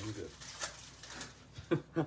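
A man's voice says a couple of words, then a quiet stretch with two faint clicks before speech starts again near the end.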